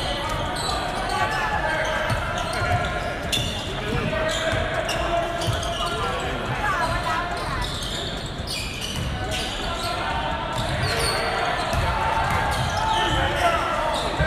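Live basketball in a gym: a basketball bouncing on the hardwood court and other short knocks from play, over an indistinct hubbub of spectators' voices echoing in the hall.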